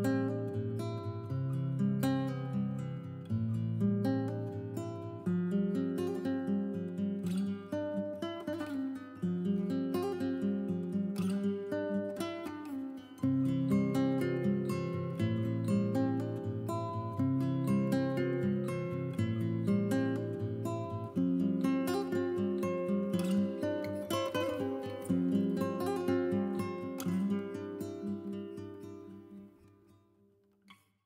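Background music: acoustic guitar playing plucked notes and chords, fading out near the end.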